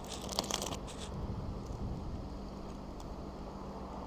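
Plastic bun wrapper crinkling and rustling in the first second as a soft filled bun is bitten into, then faint chewing over a steady low hum.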